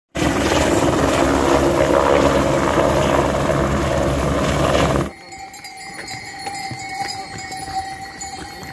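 Helicopter running close by, hovering low over a helipad: a loud, steady rotor and engine sound that cuts off suddenly about five seconds in. After the cut comes a quieter stretch of pack-mule bells ringing on a trail.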